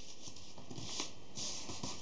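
Thin card being folded and creased by hand: a few faint, soft rustles and brushes of the sheet under the fingers, over a steady background hiss.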